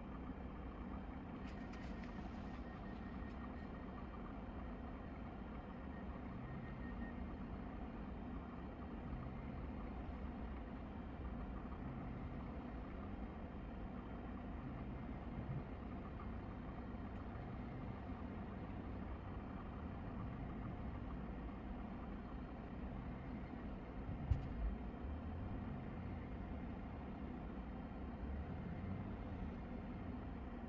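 Elegoo UV resin curing station running through its cure cycle: a faint, steady low hum from its turntable motor. A single short knock comes about 24 seconds in.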